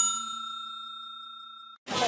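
Bell-like ding sound effect for a notification bell icon being tapped. The chime rings out and fades steadily, then cuts off abruptly near the end, where street noise begins.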